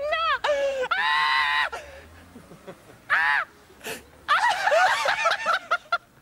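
Several men laughing hard in high-pitched bursts, with a lull after the first two seconds and a longer burst of laughter from about four seconds in.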